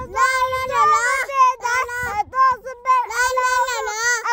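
Young children singing together in high, sustained notes, with a short break a little after two seconds in.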